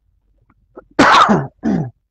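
A man clearing his throat with two coughs about a second in, the first longer and louder than the second.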